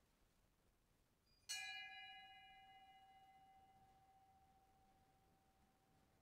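A small bell struck once about a second and a half in, its clear ringing tone fading slowly over several seconds, marking the start of Mass.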